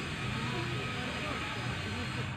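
A steady low rumble of outdoor noise, with faint voices in the background.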